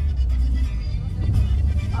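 Music playing over the car stereo with heavy bass, inside a vehicle's cabin, over the low rumble of the moving vehicle.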